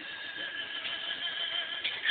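Music with sustained notes playing from the Samsung U700 cellphone's small built-in loudspeaker, turned down, thin and without bass.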